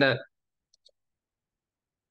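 Two faint clicks from a computer mouse, a little over a tenth of a second apart.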